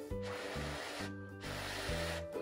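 A person slurping instant soba noodles, in two long slurps with a short break about a second in. Background music with steady low notes plays underneath.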